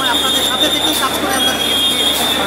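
Voices of a close crowd talking over one another, with a steady high-pitched whine underneath throughout.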